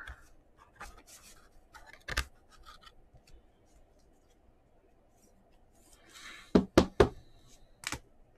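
Trading cards being handled and laid down on a tabletop: a few light taps and slides, then a short rustle about six seconds in, followed by three sharp knocks in quick succession and a single knock near the end.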